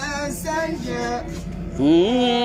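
A young man's voice reciting the Quran in a melodic, chanted style, with held notes and ornamented turns of pitch. Near the end the voice slides up into a louder, long held note.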